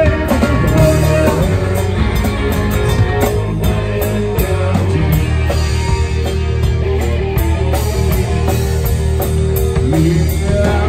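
Live rock band playing: electric guitar, bass guitar and drum kit over a steady beat.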